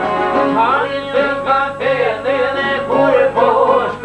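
Two long-necked plucked lutes of the Albanian çifteli type played together in a folk tune, with a man singing over them in sliding, ornamented phrases.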